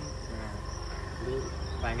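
A steady high-pitched drone in the background, with a low buzz under it, behind faint voices; a man begins to speak near the end.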